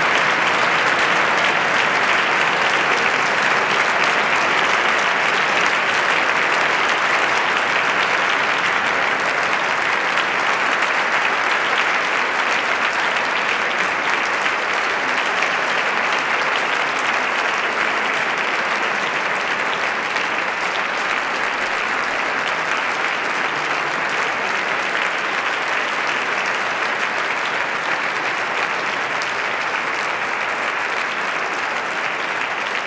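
An audience applauding steadily, a dense even clapping that slowly grows quieter.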